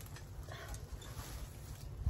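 Dry grapevine stems and loose soil rustling and crackling in gloved hands as the vine's root ball is worked free, over a low steady rumble.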